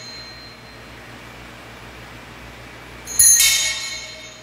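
Altar bells shaken in a short, bright jingle about three seconds in, ringing briefly before fading: the bells rung at the consecration of the host during Mass. Before it only a faint steady hum.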